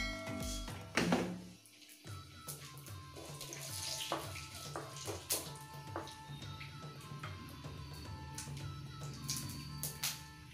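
Background music with steady tones, over hot oil sizzling and mustard seeds crackling in a pan, with scattered sharp pops.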